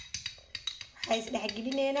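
Metal spoon clicking and scraping against a small glass bowl as it stirs a thick paste, a quick run of sharp clinks. A woman's voice comes in about a second in, holding drawn-out tones over the stirring.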